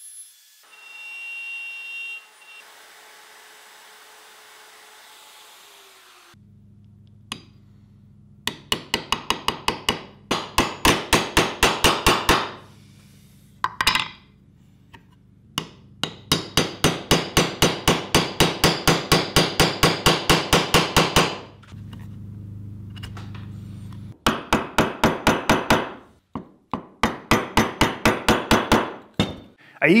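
Wood chisel struck in quick, even taps, about five a second, in three runs with pauses between, paring the curved edges of a routed recess in maple. The tapping starts about six seconds in.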